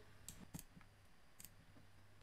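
A few faint computer mouse clicks over near silence, the first two close together and another about a second later. A faint low hum runs underneath.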